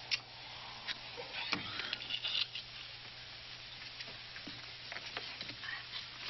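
Steady hiss and crackle of an old optical film soundtrack with a low hum under it, broken by a few light clicks and rustles as small objects are set on top of a door transom.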